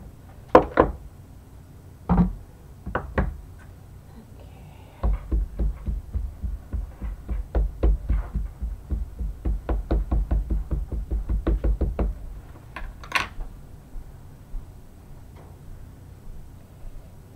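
Rapid, loud tapping of an ink pad against a wood-mounted rubber stamp close to the microphone, about four or five taps a second for several seconds, as the stamp is being inked. A few separate knocks of the wooden stamp block come before the run, and a single sharp click near the end.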